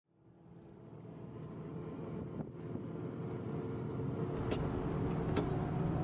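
Vehicle engine and road noise heard from inside the cabin while driving, fading up from silence, with two sharp clicks near the end.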